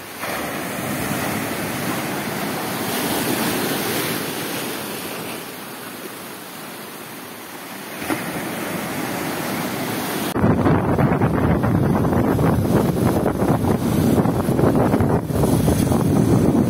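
Surf washing onto a beach, swelling and ebbing. About ten seconds in it cuts abruptly to louder, rougher wind noise on the microphone from a moving motorcycle.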